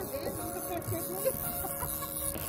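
Background music at an even, moderate level, with a wavering melody line.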